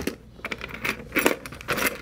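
Keys jingling on a keyring with several short metal clicks as a key is worked in the lock of a Liberty HD-50 steel vehicle lockbox.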